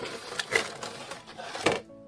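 A cardboard box and its plastic packaging being handled as a figure is unboxed: a run of small clicks, taps and scrapes, with one sharper knock near the end.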